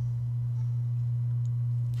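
A steady low electrical hum, one unchanging tone that carries on without a break.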